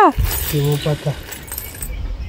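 Metal clinking and tapping from a claw hammer working over a small tin can, with a few short pitched calls over it, one falling away at the start and two brief ones about half a second and a second in.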